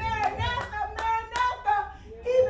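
A few sharp hand claps over a voice calling out, its pitch rising and falling.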